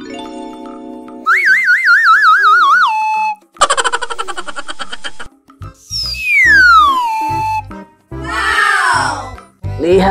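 Cartoon sound effects over children's music: a steady buzzing tone, then a wobbling boing that drops in pitch at its end, a short burst of bouncy music, then a long falling whistle glide and a shorter falling sweep near the end.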